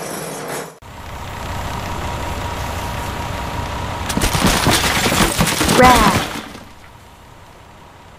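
Sound effects for a cartoon monster truck: a steady low engine rumble that builds, then a crash about four seconds in as it smashes through a block, with bricks clattering and tumbling for about two seconds.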